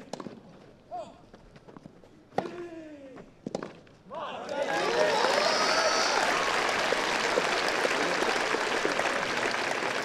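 Tennis rally: a few sharp racket strikes on the ball, one of them followed by a short grunt that falls in pitch. From about four seconds in a crowd applauds and cheers at the end of the point, with a brief whistle among the cheering.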